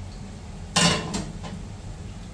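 A utensil clinking against a bowl of soaked mung beans: one sharp clink a little under a second in, then two lighter knocks.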